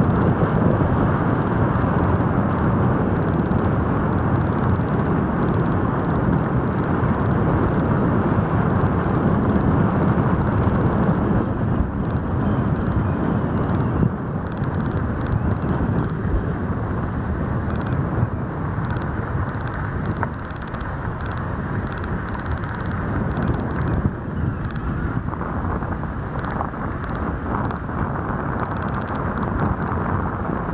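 A vehicle driving on a dirt road: a steady, noisy rumble of tyres and engine, a little quieter in the second half.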